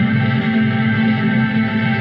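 Ambient post-rock music of layered, sustained electric guitar tones, washed in echo and reverb and built up with a looper pedal.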